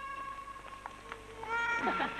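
A long, steady, high-pitched meow-like cry, then near the end a second, higher cry that rises slightly.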